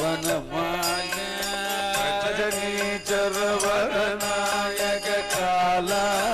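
Male voices singing a Carnatic-style Hindu devotional bhajan over a steady harmonium drone, with regular percussion strikes keeping the beat.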